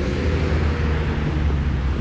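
Steady street traffic noise: a low engine hum with tyre hiss on a wet road.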